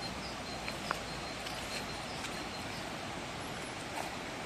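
Small birds chirping in short, repeated high notes over a steady outdoor hiss, with a single sharp click about a second in.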